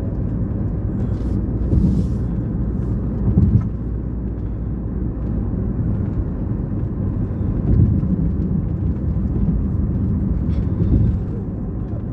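Road noise inside a car's cabin at highway speed: a steady low rumble of tyres and engine, with a few brief louder bumps about 2, 3.5 and 8 seconds in.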